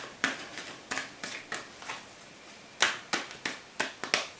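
Tarot cards being handled: about nine light, sharp clicks and snaps of stiff cardstock, the loudest near three seconds in.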